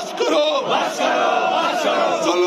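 A crowd of men shouting protest slogans together, the voices held on long drawn-out notes that rise and fall.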